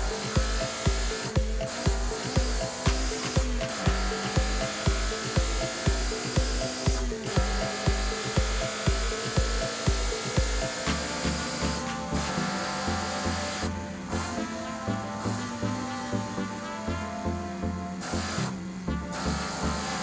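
Background music with a steady kick-drum beat about twice a second; the bass line changes to a busier pattern about halfway through.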